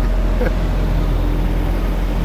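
Diesel engine of a double-drum road roller running with a steady low hum as the roller works over freshly laid asphalt.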